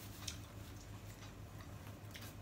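Faint scattered clicks from eating a seafood boil by hand: shellfish shells being peeled and food chewed, over a low steady hum.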